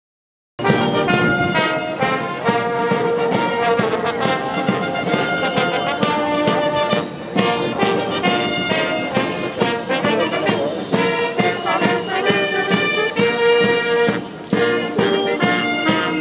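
Marching military band playing a march on brass with a steady beat, starting about half a second in.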